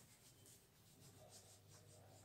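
Faint repeated wiping strokes of a handheld duster erasing marker writing from a whiteboard, barely above near silence.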